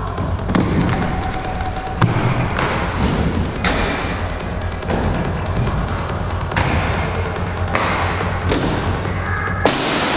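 Inline skate wheels rolling over plywood ramps and concrete, with several sharp knocks and thuds from landings and skate impacts, over background music.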